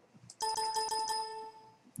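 Windows 7 system chime, the feedback sound played when the speaker volume slider is let go: one ringing tone with a steady pitch that starts a little way in and fades after about a second.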